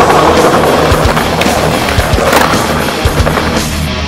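Skateboard wheels rolling over smooth stone pavement, a steady rough rumble that swells into a louder scrape about two and a half seconds in and fades out just before the end, under loud rock music with drums.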